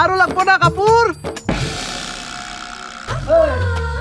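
A man's excited voice for about the first second, then a sudden crash that rings and fades over about a second and a half, then another voice begins near the end.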